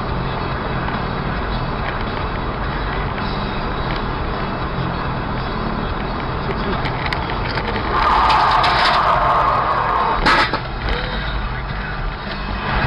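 Dash-cam recording of a car on the move: steady engine and road noise. About eight seconds in, a louder, higher-pitched noise lasts about two seconds, then a single sharp bang comes just past ten seconds.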